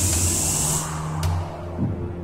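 Suspenseful film score: a rising swell of noise that cuts off just under a second in, over a steady low drone, with a single sharp hit a moment later.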